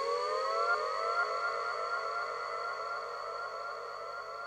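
Closing bars of a downtempo electronic track: a siren-like tone sweeps upward over and over, about twice a second, over a steady high whine, slowly fading out.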